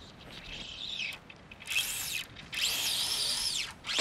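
Fly reel's drag whining as a hooked bonefish runs and pulls line off, in three spells with the pitch rising and falling.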